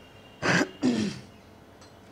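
A man clearing his throat in two short rasping bursts, close together.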